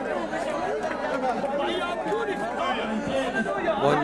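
A woman speaking, with the chatter of several other voices around her.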